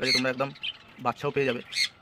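A man's voice talking, with the squawks and chirps of budgerigars mixed in.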